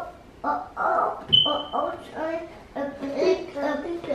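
Young children talking excitedly, with a brief high squeak about a second and a half in.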